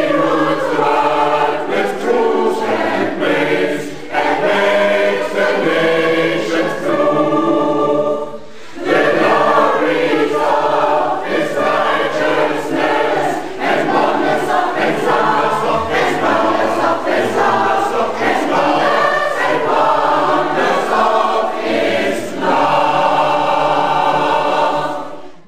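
School choir singing in long held phrases, with a short break about eight and a half seconds in.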